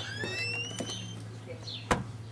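A door swinging on a squeaky hinge, a rising squeal over about the first second, then shutting with a sharp latch click near the end. Faint bird chirps and a steady low hum sit underneath.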